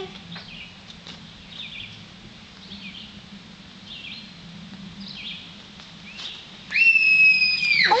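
Faint, scattered bird chirps, then near the end a loud, high-pitched shriek held steady for over a second that drops sharply in pitch as it ends.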